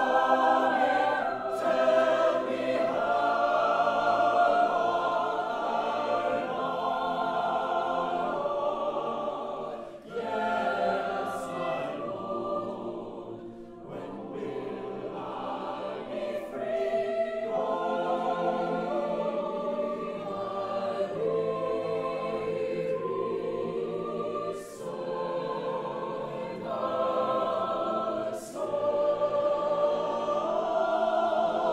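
Mixed-voice chamber choir singing in several parts, holding full chords that change every second or two. There are short breaks near ten and fourteen seconds in and again late on, with sharp "s" consonants sung together.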